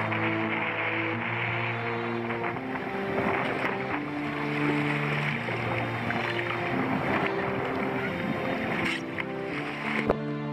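Background music with slow, held notes over the rushing noise of choppy sea water and wind around a kayak on the move.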